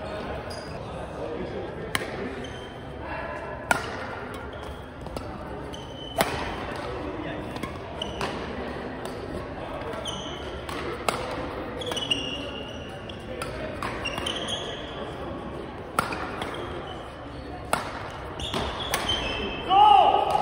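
Badminton singles rally in a large gym hall: sharp racket-on-shuttlecock hits at irregular intervals of a second or a few seconds, echoing in the hall. Short high squeaks of court shoes on the floor come between the hits, over a murmur of voices.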